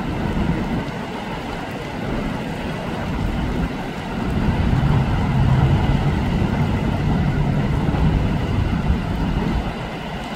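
Steady noise of road traffic and floodwater, with a low rumble that grows louder about four seconds in.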